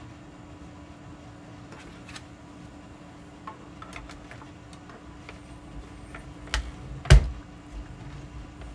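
Plastic cutting plates with a metal die being slid into a small manual die-cutting machine: a few light clicks and scrapes, then one sharp knock about seven seconds in, over a faint steady hum.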